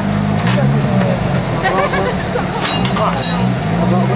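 A vehicle engine idling steadily, its low hum constant, with voices faint in the background.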